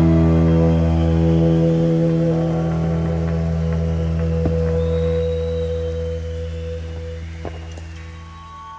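Live rock band's electric guitars holding a sustained low chord that slowly fades out, one higher note wavering over it, with a couple of faint clicks.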